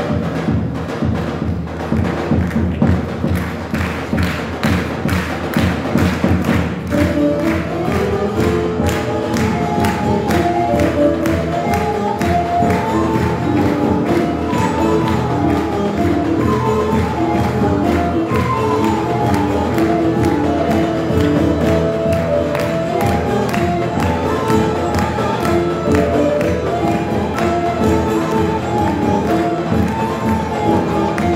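Turkish folk music ensemble playing a türkü, with bağlamas and percussion. It starts abruptly with a steady, busy rhythm, and a melody enters about seven seconds in.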